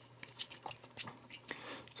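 Faint handling noises from a plastic spool of solder wire being turned in the hands to unwind a length: a few small scattered clicks and a light rustle.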